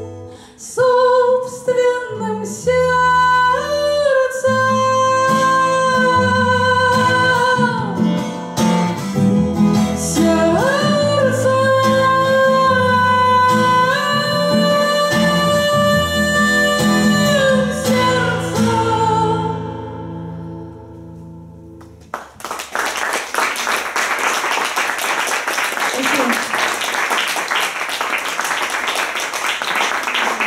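A woman sings long held notes to a strummed twelve-string acoustic guitar, ending the song. The music fades out about twenty seconds in, and a couple of seconds later audience applause breaks out and runs on.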